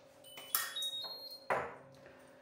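A short run of high electronic beeps stepping upward in pitch, with two sharp knocks, about a second apart.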